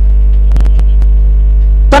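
Loud, steady electrical mains hum from the announcer's sound system: a deep drone with fainter steady tones above it, and a few short clicks about half a second in.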